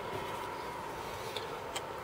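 A few faint clicks of HP-15C calculator keys being pressed over a low, steady background hum.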